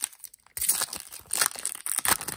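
Foil wrapper of a baseball card pack being torn open and crinkled by hand, in short irregular rustles starting about half a second in.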